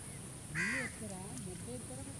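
A crow caws loudly once, about half a second in, followed by softer calls.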